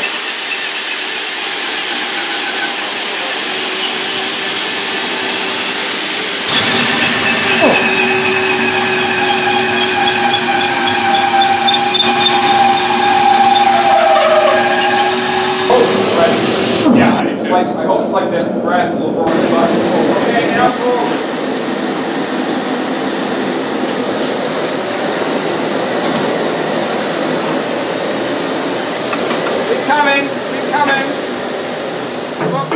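Pneumatic riveting gear at work: a steady loud rush of compressed air, with faint squealing tones in the middle stretch. The sound changes abruptly about six seconds in and again about seventeen seconds in.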